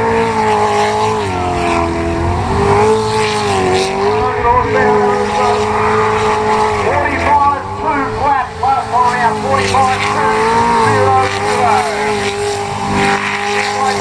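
A V8 jet sprint superboat's engine running hard on the course. Its revs dip briefly and climb again several times.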